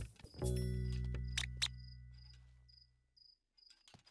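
Short high chirps repeating about three times a second, a cartoon sound effect for a hidden night animal. A low musical note fades away over the first two seconds.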